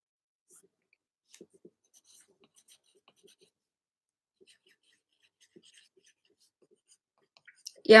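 Faint scratching of a pen writing on paper in short, scattered strokes, with a word of speech at the very end.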